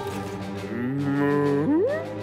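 A cartoon cattle character gives a long, low moo that holds steady for about a second and then swoops sharply upward in pitch near the end, over soft background music.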